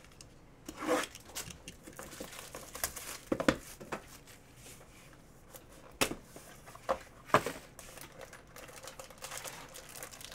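Plastic wrapping on a Panini Impeccable football card box crinkling and tearing as the box is opened, in several sharp crackling bursts with handling noise between them.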